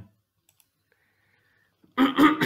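Two faint computer mouse clicks about half a second in, close together.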